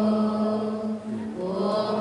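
A group of voices chanting together in unison on long held notes, with a short break for breath about a second in.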